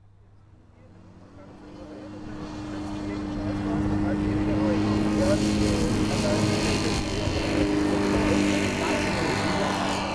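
Engine and pusher propeller of a large 1:2.5 scale Speed Canard SC-01 model aircraft running at full power on its takeoff roll. It grows louder over the first few seconds and then holds a steady drone, with the model lifting off near the end.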